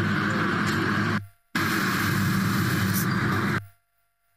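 Loud, steady background noise with a low hum under a hiss. It cuts out abruptly for a moment about a second in, returns, and dies away shortly before the end.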